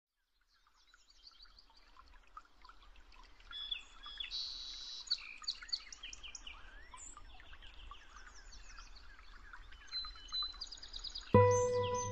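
Several songbirds chirping and trilling over one another, fading in after about a second of silence. Near the end, music with sustained low tones comes in over them.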